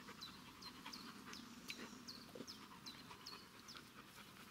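Near silence with a small bird repeating faint, short, high chirps that fall in pitch, about two to three a second.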